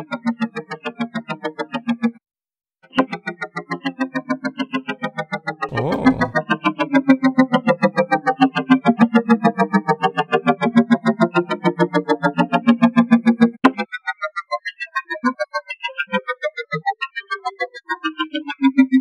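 A synthesized sound pulsing rapidly through the TugSpekt spectral (FFT) processor, its spiral image making many pitches glide up and down at the same time, like a Shepard tone going in several directions at once. It drops out briefly about two seconds in, gives a short noisy swoosh around six seconds, and thins to sparser notes near the end.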